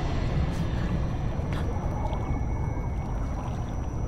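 A low, dark rumbling drone from a horror film's sound design, steady throughout, with a few faint soft hits over it.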